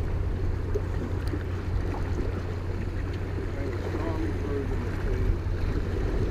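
Wind rumbling on the microphone over small waves washing against jetty rocks, with faint distant voices about four seconds in.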